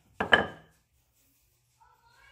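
Wooden rolling pin knocking twice in quick succession on a granite countertop as it is set down.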